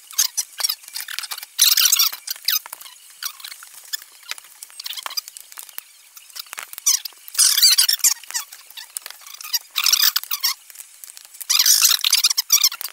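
Poker chips and playing cards being handled on a felt table close to the microphone: thin, high clicking and rattling that comes in several short spells.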